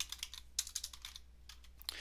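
Computer keyboard typing: a quick, irregular run of faint keystrokes.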